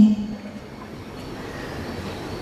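A man's amplified chanted recitation breaks off between phrases: his held, falling note ends right at the start, and a steady, even background rumble fills the rest of the pause.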